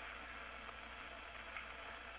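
Steady hiss of an open space-to-ground radio link, with a low hum underneath.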